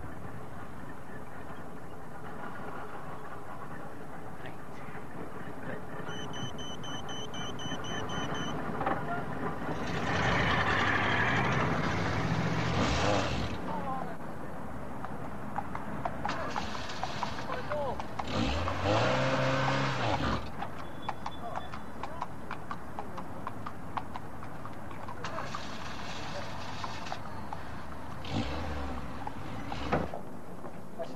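Van engine running as it drives, with several louder surges of engine and road noise. In the loudest of these the engine pitch rises and falls.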